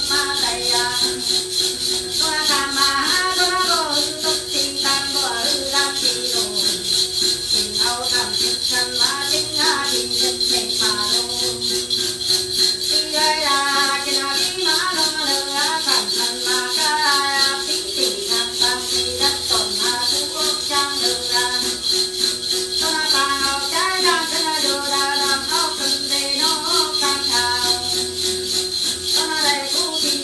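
A Then ritual chant sung in long wavering phrases, over a steady, rhythmic jingling of a shaken bell rattle (xóc nhạc) that runs without a break.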